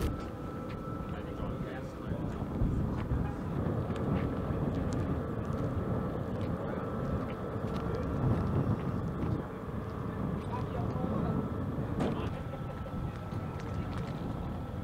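Indistinct background voices over a low, fluctuating rumble, with a faint steady high tone and a few scattered clicks.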